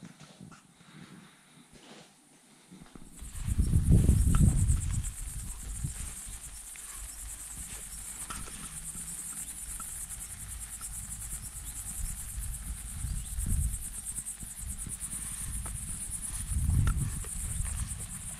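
Insects chirring in a steady high-pitched chorus, starting about three seconds in, with low buffeting on the microphone that is loudest about four seconds in.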